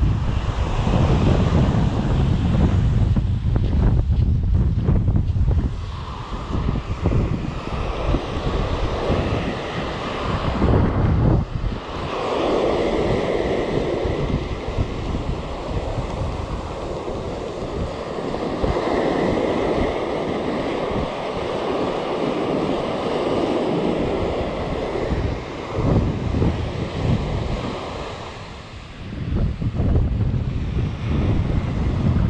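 Small sea waves breaking and washing up a sandy beach, with wind buffeting the microphone, heaviest in the first six seconds and again briefly around ten seconds in.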